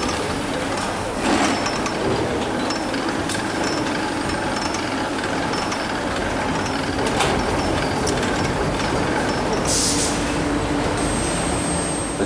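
Factory assembly-line machinery: a steady mechanical din from conveyors and machines, with a few sharp metallic knocks.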